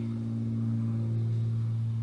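Steady low electrical hum with a fainter higher overtone, the background hum of an old 1968 tape recording, heard in a pause between spoken words.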